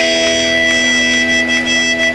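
Amplified electric guitars left ringing with several steady, held feedback tones as the band stops playing at the end of a hardcore song.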